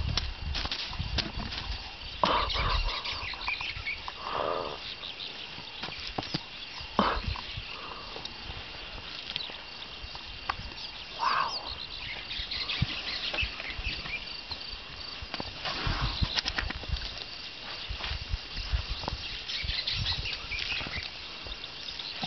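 A young African elephant close beside the vehicle, making scattered rustles and soft low thumps as it moves and forages, over a faint steady insect drone.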